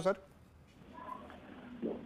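A short pause between speakers on a live broadcast: faint telephone-line hiss with a brief faint tone about a second in, then a caller's voice starting over the phone line near the end.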